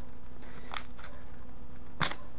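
Steady low background hum with two or three brief, soft rustles or clicks about three quarters of a second to a second in, typical of handling noise close to the microphone.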